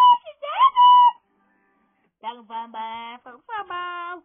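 A high-pitched wailing voice, held and then swooping, cuts off about a second in. After a short pause, singing begins, low at first and then higher.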